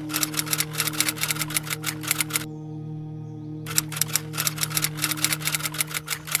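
Typewriter keystroke sound effect: two runs of rapid key clicks, the first stopping about two and a half seconds in and the second starting about a second later, over a steady droning music bed.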